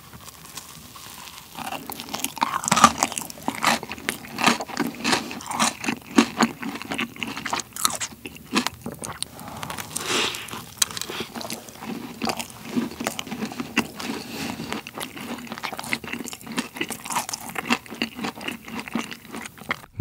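Close-miked biting and chewing of a thick cream-filled pineapple macaron (ttungcaron), with a run of irregular crisp crunches from the shell and the crunchy bits in the filling. The crunching gets louder about a second and a half in and goes on steadily after that.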